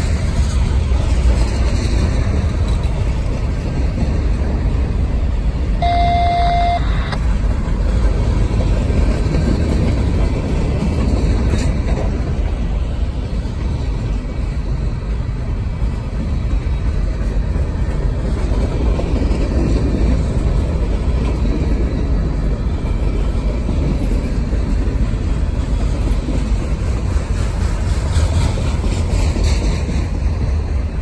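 Freight cars of a slow-moving manifest train rolling past on the rails: a steady low rumble of wheels on track. A short steady tone sounds briefly about six seconds in.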